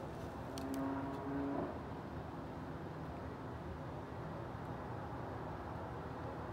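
Steady low background noise of a room, with a faint pitched hum for about a second near the start and a couple of light ticks from paper being handled.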